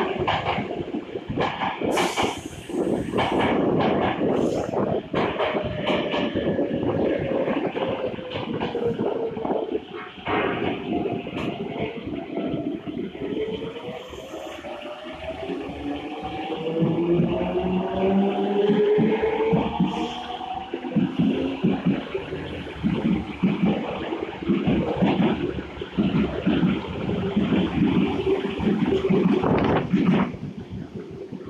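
Osaka Metro 66 series subway train departing and gathering speed: the traction motors' whine rises in pitch about halfway through, over the rumble and rhythmic clatter of wheels on the rails as the cars pass.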